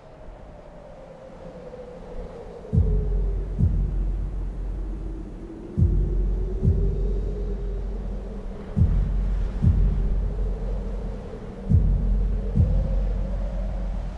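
Tense film score: a low, wavering held drone, joined about three seconds in by deep drum hits in pairs like a heartbeat, four pairs about three seconds apart.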